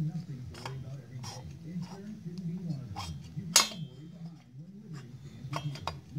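Metal clicks and clinks from a Huztl MS660 clone's big-bore cylinder and piston as the crankshaft is turned by hand. The loudest is a ringing clink a little past halfway, typical of the piston knocking against the top of the cylinder because the cylinder will not seat on the crankcase.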